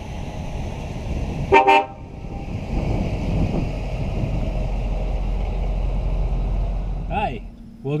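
A 1956 Chrysler Imperial's horn gives one short honk about one and a half seconds in, while the car's 354 cubic-inch Hemi V8 and tyres are heard as it drives past, the engine sound growing louder and steady from about three seconds in.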